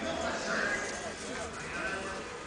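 Indistinct voices talking throughout, with no words clear enough to make out.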